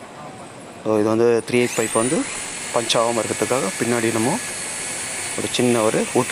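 Electric hammer drill with a 3.5 mm bit spinning up about a second and a half in, its whine rising and then holding steady before it stops near the end.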